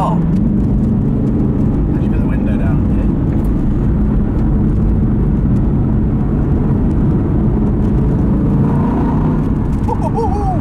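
Aston Martin V8 with a custom exhaust, heard from inside the cabin while cruising on the road: a steady, unbroken engine drone mixed with tyre and road noise.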